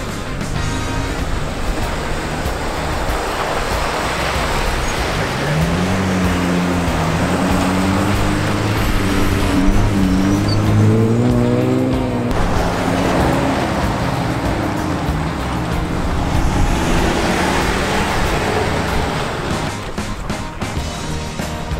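Lifted Jeep Wranglers driving past on a sandy dirt trail: engines and tyres on sand, with one engine note rising and falling for several seconds about halfway through. Background music plays along with it.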